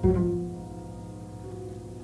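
Instrumental interlude of a slow 1950s jazz ballad: a plucked double bass note and soft piano chords, struck at the start and fading away.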